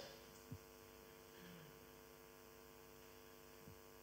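Near silence: a steady electrical mains hum, with a faint click about half a second in.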